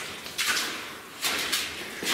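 Two footsteps on the loose rock and gravel of a mine tunnel floor, a little under a second apart.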